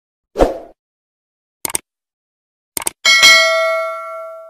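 Subscribe-animation sound effects: a thump about half a second in, two quick sets of clicks, then a bell ding about three seconds in that rings on and slowly fades.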